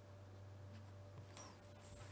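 Very faint pen scratching on paper as a short word is handwritten, with one small tick about a second and a half in, over a faint steady hum.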